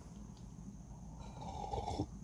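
Faint sipping of a warm drink from a ceramic mug, a soft, breathy slurp.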